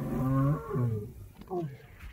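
Male African lion giving low, drawn-out moaning grunts at close range: a long call through the first second, then a short one about a second and a half in.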